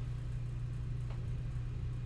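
A steady low hum in a pause between speech, with a faint click about a second in.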